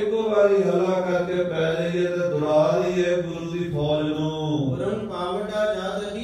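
A man chanting a verse in a sing-song voice through the hall's microphone, in long held notes that slide between pitches.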